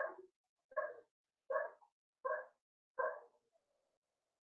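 A dog barking in a steady series, five short barks about three quarters of a second apart, faint.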